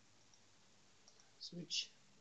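Mostly near silence with a few faint computer mouse clicks, then a couple of sharper clicks about a second and a half in, alongside a brief spoken phrase.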